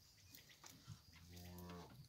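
A single faint, low cow moo, held steady for under a second, starting a little over a second in.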